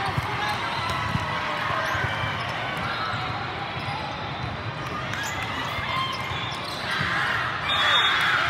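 Busy indoor volleyball hall: many overlapping voices of players and spectators, with a few sharp smacks of volleyballs being hit early on. Near the end, shouting and cheering swell as a rally is played.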